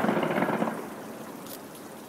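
Fireworks going off: a dense rushing crackle that fades over the first second into a steady hiss, with one sharp crack about one and a half seconds in.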